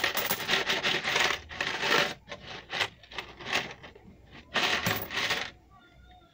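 Coins clattering and clinking as they are shaken out of a plastic piggy bank onto a pile of coins, in several bursts, dying away near the end.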